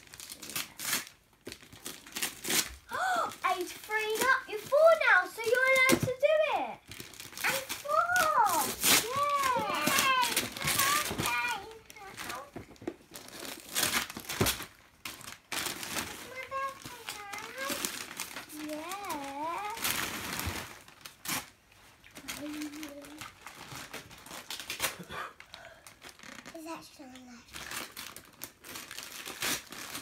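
Gift wrapping paper being torn and crinkled by hand as a present is unwrapped, in a run of short rips and rustles.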